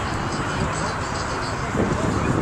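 Indistinct crowd chatter over a steady outdoor background din.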